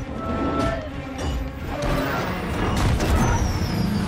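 Film-score music over a continuous low rumble of action-scene sound effects, with a few crash-like hits.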